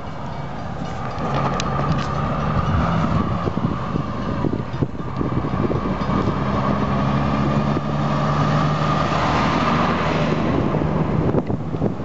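Road vehicle engines at a railroad crossing: a truck engine running steadily, with the noise growing a little louder as a pickup truck drives close past near the end.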